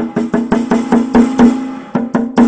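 Snare drum head struck repeatedly with a drumstick, about four hits a second, each hit ringing with a steady drum tone; the hits grow louder, then pause briefly near the end before one more strike.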